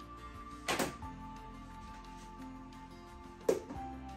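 Background music, broken by two short plastic knocks, one about a second in and one near the end, as the tray and lid of a plastic microwave vegetable steamer are set down and closed.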